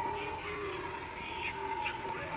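Indistinct voices in the background over a steady high-pitched tone.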